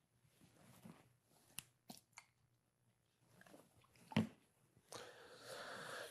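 Quiet room with a few faint clicks and one louder short knock about four seconds in, from a pH sensor probe and small glass beakers being handled on a lab bench.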